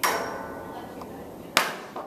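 Two sharp knocks with a ringing tail: one at the start, fading over about a second and a half, and a second about one and a half seconds in.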